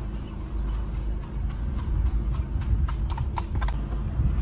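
Horses' hooves clip-clopping on a tarmac road at a trot, heard from inside a car, with irregular sharp strikes that come more often in the second half. A steady low rumble runs underneath.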